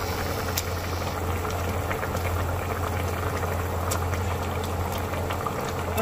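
Asam pedas broth boiling hard in a pan, a continuous bubbling with scattered small pops, over a steady low hum.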